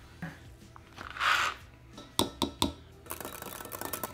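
A metal spoon in a Pyrex glass measuring cup, mixing creamer powder into coffee. A brief rustle about a second in, then three sharp ringing taps of the spoon on the glass, then rapid stirring with quick clinks near the end.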